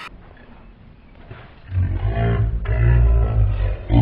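A deep, loud roar with a heavy rumbling low end, starting a little under two seconds in after a quieter stretch.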